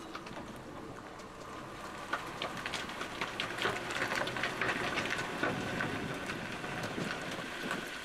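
Tandem-axle trailer tires rolling slowly over grit and small stones, with many small crackles and pops that thicken from about two seconds in as the tires scrub sideways through a turn.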